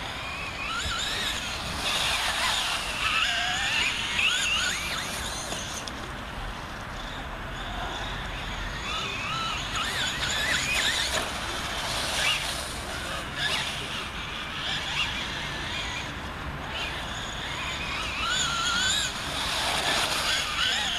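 Traxxas Slash 4x2 RC short-course truck's motor whining, its pitch rising and falling over and over as the throttle is worked, over the crunch of tyres on dirt.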